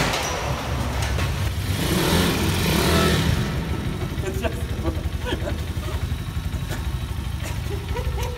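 Kayo pit bike's single-cylinder four-stroke engine running, rising briefly about two seconds in, then settling to a steady idle.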